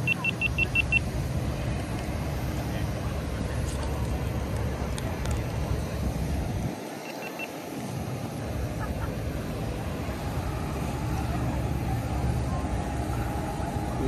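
Steady rumbling outdoor noise, heaviest in the low end, typical of wind buffeting a phone microphone, dropping away briefly just after the middle. A quick run of about seven short high beeps right at the start.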